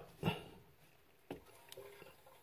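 Mostly quiet, as the toilet's shutoff valve is turned open by hand: a single click past the middle and a faint, brief squeak near the end.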